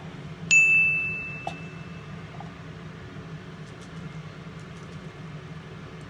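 A single high, bell-like ding about half a second in, ringing out and fading over about a second and a half, over a steady low hum.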